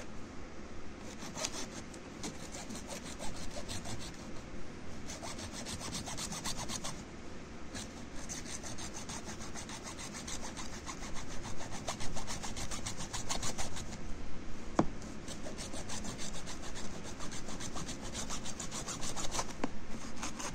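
Hacksaw cutting through the plastic housing of a water-purifier filter cartridge: quick, continuous back-and-forth rasping strokes, louder in the second half, with one sharp click a little after halfway.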